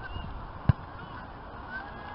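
A single sharp knock a little under a second in, over steady outdoor background noise with a few faint, short, high distant calls.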